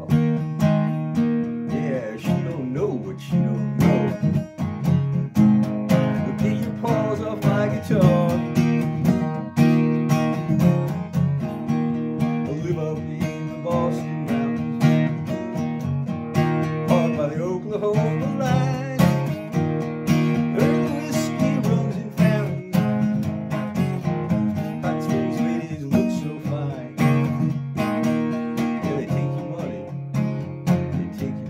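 Steel-string acoustic guitar strummed steadily in a country stomp rhythm, chords changing as it goes. A man's voice comes in now and then over the strumming.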